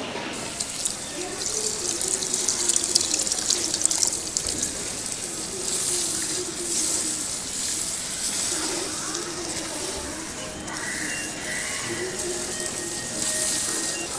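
Beef masala sizzling in a clay pot, an even hiss of frying, while a wooden spatula stirs it.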